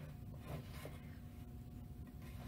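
Hands squeezing and mixing wet salt dough of flour, salt and water in a glass mixing bowl: faint, soft squishing and rubbing.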